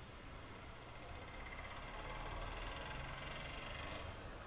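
Faint, steady background noise: a low hum under hiss, swelling slightly about a second in.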